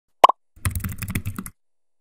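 A short, loud double pop, then about a second of rapid computer-keyboard typing, key clicks in quick succession, that stops about halfway through.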